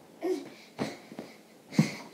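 A girl breathing hard in short breathy bursts, some with a bit of voice, after a tumble: about three puffs in two seconds, the last the loudest.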